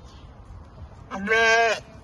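A sheep bleats once, a single loud call lasting well under a second, starting about a second in.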